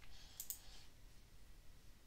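A computer mouse button clicking twice in quick succession about half a second in, faint against room hiss.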